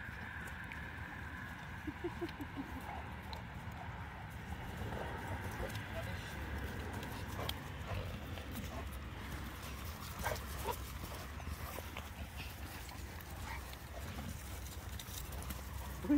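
Dogs moving about close by: scattered light clicks and taps over a low steady rumble.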